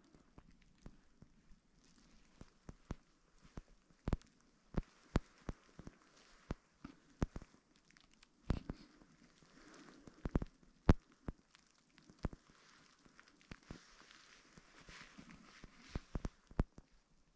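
Irregular sharp clicks and taps close to the microphone against a quiet, still background. They come several a second at times, and the loudest is about eleven seconds in.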